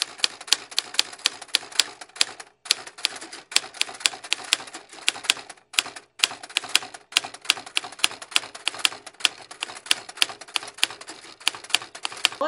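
Rapid, regular clicking like a typewriter, about four clicks a second, broken by a few short pauses.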